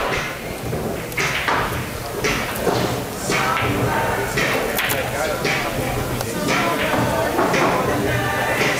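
Indistinct voices talking in a large hall, with no clear words.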